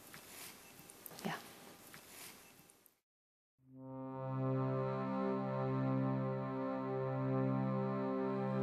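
Quiet room tone, then about three and a half seconds in a Steirische Harmonika (diatonic button accordion) fades in playing slow, sustained chords. Its low notes change about every second and a half.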